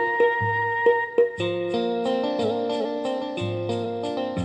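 Instrumental introduction of a film song played by a small live band: a plucked-string, guitar-like melody over low drum strokes, with an even ticking beat coming in about a second and a half in.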